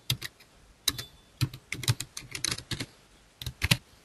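Typing on a computer keyboard: quick, irregular keystrokes in short runs, with a brief pause about three seconds in before a last few keys.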